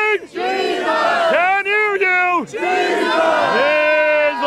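A man and a crowd shouting a call-and-response chant, with several long, drawn-out cries of "Jesus!".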